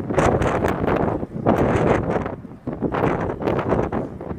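Wind buffeting the phone's microphone in three gusts, with short lulls in between.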